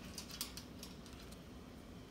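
Faint, scattered metallic clicks of a quaker parrot (monk parakeet) beaking and shaking the metal front door of its cage.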